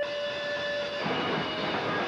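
Live post-hardcore band playing loud, with distorted electric guitars and bass. A steady, high held tone, like amplifier feedback, stops about a second in, and a dense wall of distorted noise carries on.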